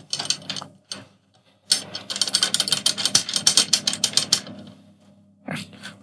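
Snare drum tension rods being spun finger-tight by hand, a fast run of small metallic clicks for a couple of seconds in the middle, after a few scattered clicks near the start. This is the finger-tight first step of tuning a freshly fitted head, turning rods at opposite sides.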